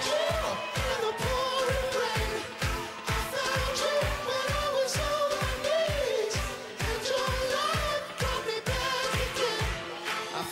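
Live pop-dance music in a break between sung lines: a steady kick drum about two and a half beats a second under a bouncing lead melody.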